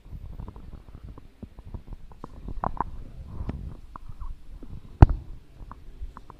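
Low rumbling handling noise with scattered small clicks and knocks, and one sharp thump about five seconds in that is the loudest sound.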